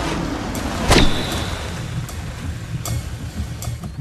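Car engine running with a low, steady rumble under the film's sound mix. About a second in, a single sudden sharp crack, the loudest moment, leaves a high ringing tone that fades within about half a second.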